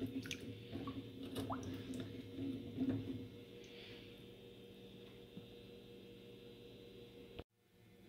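Wet asparagus spears being rinsed and handled by hand in a stainless steel sink: faint drips and small knocks in the first three seconds or so, over a faint steady hum. After that only the hum remains, until the sound cuts out just before the end.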